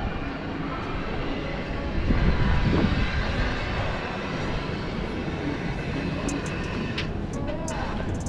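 Busy city street ambience: passers-by talking over a continuous low rumble that swells for a second or so about two seconds in, with a few sharp clicks near the end.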